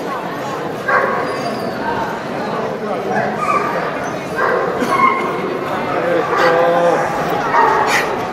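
Dogs barking several times in short calls, over background chatter of people in the hall.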